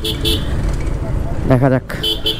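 Motorcycle engine running at low speed, with low rumble on the microphone from riding. A short spoken phrase comes near the end.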